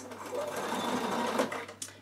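Bernina sewing machine running as it stitches a seam, for about a second and a half before it stops.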